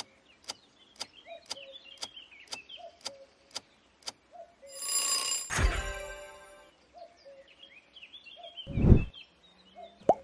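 Quiz countdown timer sound effect ticking twice a second, then a bright bell-like chime signalling the answer reveal, followed near the end by a short low whoosh-thump, the loudest sound, as the screen changes.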